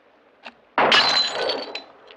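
A glass bottle hit by a shot and shattering: one sudden loud crash with ringing glass that fades over most of a second. A short click comes just before it.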